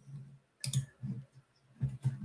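A few quiet computer mouse clicks, the clearest one a little over half a second in, as the screen share is switched off and the webcam view comes back.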